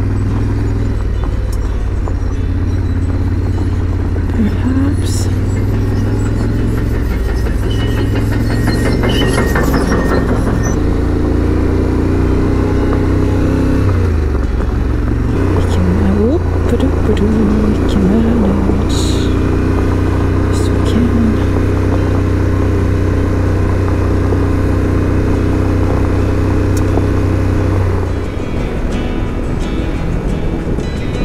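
Yamaha Ténéré 700's parallel-twin engine running steadily while riding on loose gravel, heard from on the bike. About halfway through the engine note dips and then picks up again. A couple of seconds before the end the sound drops in level.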